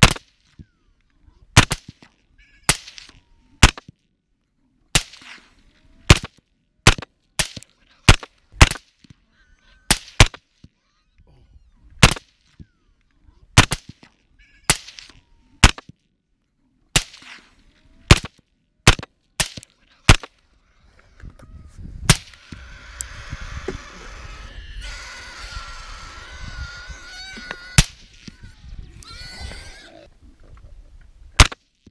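Rifle shots at a group of hogs, about twenty sharp reports fired in quick succession, at times about one a second, each with a short echo. During the last third the shooting mostly pauses and a steady rushing noise with a wavering whine fills several seconds, followed by one more shot.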